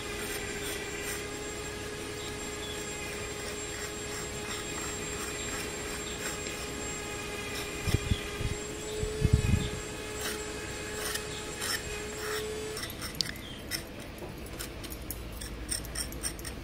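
Small metal fork-shaped texturing tool scratching stripes into wet texture paste on an MDF board: many short scraping strokes, with a few dull knocks about halfway through.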